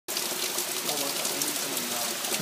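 Heavy tropical-storm rain falling steadily onto a flooded lawn and standing water, an even hiss of downpour.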